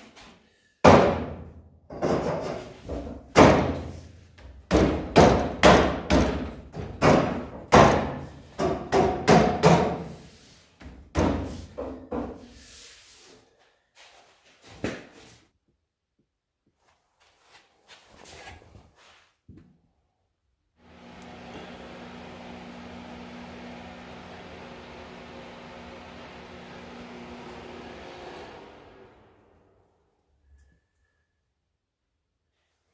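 Steel roll-cage tubing being knocked and banged into place, about fifteen loud knocks over some twelve seconds, each fading quickly. After a pause, a quieter steady hum with a low tone runs for about eight seconds.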